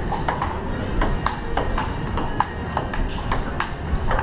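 A table tennis rally: the celluloid ball clicking off the paddles and the outdoor table top in quick succession, two or three hits a second.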